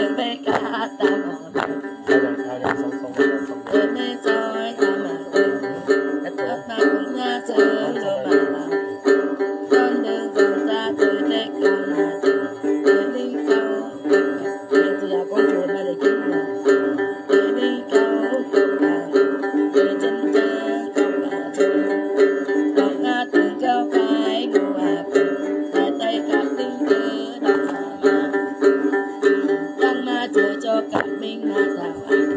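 Đàn tính, the long-necked gourd-bodied lute of Tày then rituals, plucked in a steady repeating rhythm.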